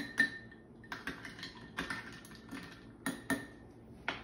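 A spoon stirring a drink in a glass, clinking against the glass in a series of irregular light clinks.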